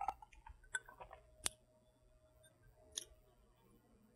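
Quiet sipping and mouth sounds of a person tasting a cocktail from a glass: a few brief, faint clicks spread over several seconds.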